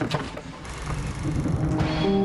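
A low rumble, then a rising whoosh near the end: a transition sound effect in the broadcast's nominee montage.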